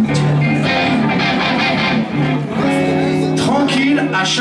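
A live band playing, with guitar strumming to the fore; from about two and a half seconds in, a chord is held and rings on.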